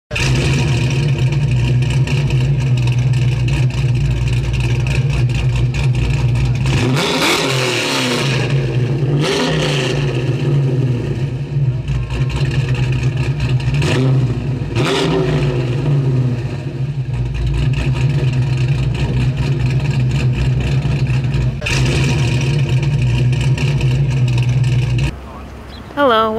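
A car engine running steadily and loudly, revving up and down a few times, about 7, 9 and 14 seconds in; it cuts off abruptly about a second before the end.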